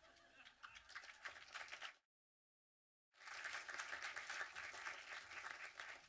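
Audience applause, broken off abruptly by about a second of dead silence at an edit, then applause again from about three seconds in.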